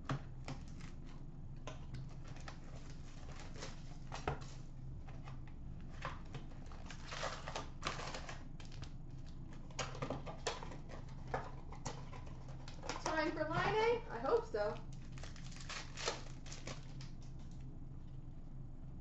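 Trading-card hobby box being opened and its packs and cards handled: a run of short sharp clicks, rustles and crinkles over a steady low hum. A brief voice comes in about 13 seconds in.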